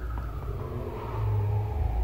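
Road traffic: a low vehicle rumble that swells about halfway through, with a distant siren wailing slowly down and back up in pitch.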